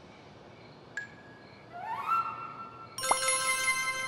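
Cartoon magic-transformation sound effect: a faint click about a second in, a rising pitch sweep, then a sudden bright bell-like chime with a soft pop about three seconds in.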